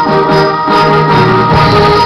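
Middle school concert band playing: loud, held wind chords over a repeating rhythmic figure in the low parts.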